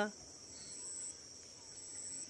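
Steady, high-pitched chirring of insects, with the last moment of a woman's sung phrase cutting off at the very start.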